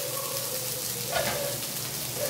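Chopped hotdog and tomato sizzling in an aluminium wok, an even frying hiss with the lid just taken off.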